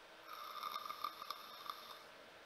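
A person drawing a long, faint breath in through something held to the lips, giving a thin steady whistle with a few faint clicks.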